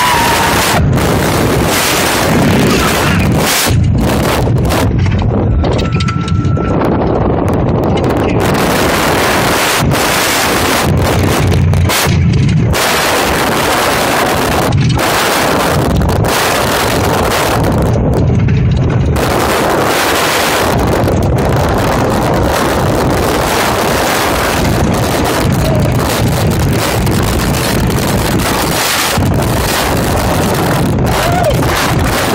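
Wind rushing over the microphone of a rider's camera on the Steel Force steel roller coaster, mixed with the rumble of the train running along the track, with a few brief lulls.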